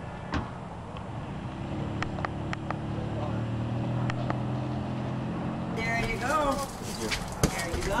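A motor vehicle's engine running close by: a steady low hum that swells and fades over about four seconds, with a few light clicks. Voices come in near the end.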